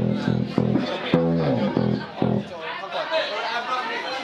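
Electric bass guitar being soundchecked: a quick run of about eight plucked notes in the first two and a half seconds, one of them sliding down in pitch. After that, room chatter takes over.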